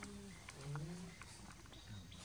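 Macaques making low grunting calls, a few short ones in the first second, with scattered light clicks and rustles.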